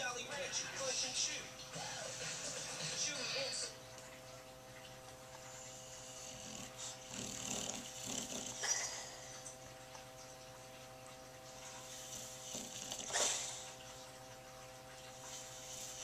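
Sleeping dog whimpering and giving small muffled yips while dreaming, in scattered bouts, over a steady electrical hum.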